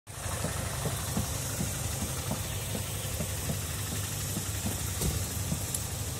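Dafra Apache 200 motorcycle's single-cylinder engine idling steadily, a low running sound with small uneven pulses.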